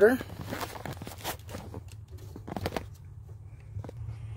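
Scattered light clicks, knocks and rustles as a hand works the old Progressive Dynamics PD4045 converter and its wiring loose in the RV power center, over a faint low hum.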